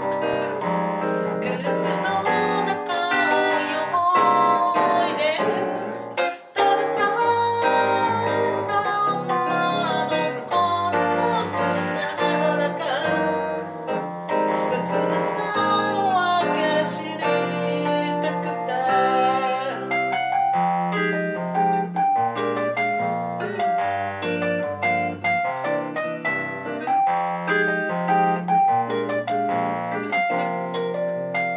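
Live band music: a woman singing into a microphone, accompanied by a Korg keyboard and an electric guitar. The music drops out for a moment about six seconds in, and in the last third the singing stops while keyboard and guitar play on.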